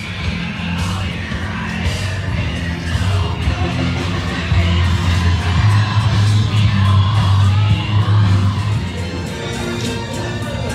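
Music with a heavy, steady bass line and vocals.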